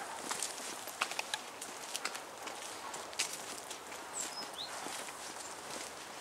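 Footsteps of several people walking on a dirt path, uneven short steps, with a brief high bird chirp about four seconds in.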